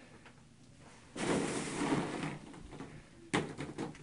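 Plastic play balls rustling and clattering against one another inside a plastic kiddie pool, in two bursts: one about a second in lasting about a second, and a sharper one near the end.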